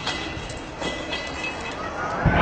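Steady rumbling noise with a few sharp cracks, one about a second in, and a faint rising tone near the end.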